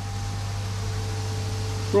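Steady low electrical hum with a faint higher tone over an even hiss: pond filtration equipment running in the filter housing.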